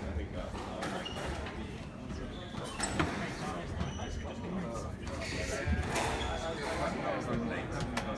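Squash ball knocked back and forth in a rally: sharp racket strikes and hits off the court walls, echoing in the enclosed court.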